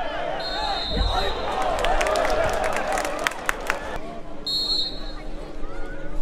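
A referee's whistle blows two blasts, a longer one about half a second in and a short one near the end, over a din of many voices from players and spectators at a football match, with several sharp knocks in between.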